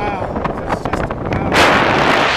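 Wind rushing over the microphone during a tandem paraglider flight, suddenly much louder about one and a half seconds in as the glider tips into a steep banking turn. A short exclamation is heard near the start.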